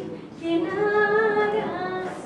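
A woman singing a Hindi song into a microphone without visible accompaniment. After a short breath she holds a long note with a slight waver.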